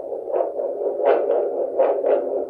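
Handheld 8 MHz vascular Doppler (Edan SonoTrax) playing the blood flow in the radial artery through its speaker: a rhythmic whooshing pulse, three beats about 0.7 s apart, each followed closely by a fainter second beat, over a steady hum. The beats are pulsing arterial flow, picked up as the probe sweeps onto the artery.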